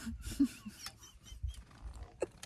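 Two people laughing silently and breathlessly: faint gasps and short breathy huffs that fade as a hard laugh winds down.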